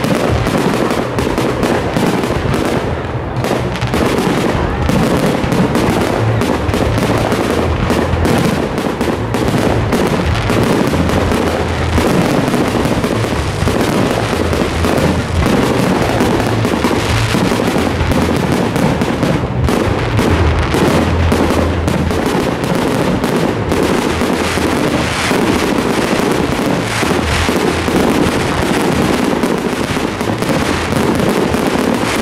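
Fireworks display: aerial shells bursting in a dense, unbroken barrage of overlapping bangs and crackles.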